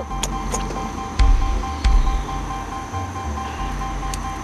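Wind gusting on the microphone, a rumbling buffeting that rises and falls every second or so, over two steady high tones held throughout.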